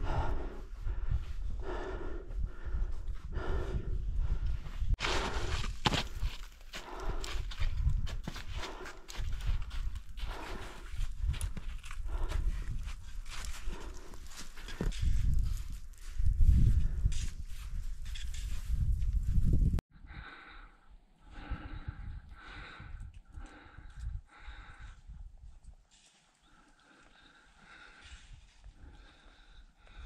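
Footsteps kicking and crunching up steep, wet spring snow in an uneven rhythm, with hard breathing and a heavy low rumble on the microphone. About twenty seconds in the sound cuts abruptly to a quieter stretch of slower, regular steps.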